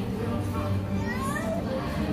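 Voices of people in a crowd, including children's lively voices with rising pitch, over steady background music.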